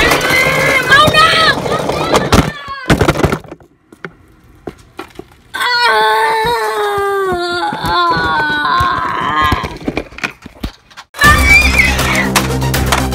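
A person's voice crying out in long wavering calls that fall in pitch, broken by sharp knocks and clatter as the phone camera is tumbled about, with a short hush between. Background music comes back in near the end.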